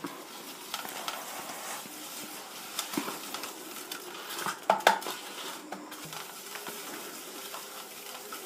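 Fingers rubbing and smearing a corn flour paste around a stainless steel bowl, a soft steady scraping on the metal, with a few light knocks against the bowl about three and five seconds in.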